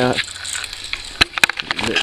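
Crinkly plastic soda bottle handled close to the microphone: a few irregular sharp clicks and crackles, bunched from about a second in.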